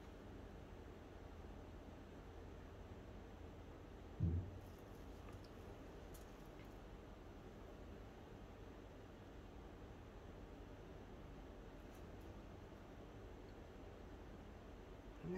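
Quiet room tone with one brief, low knock about four seconds in: a paper cup being set down on the tabletop.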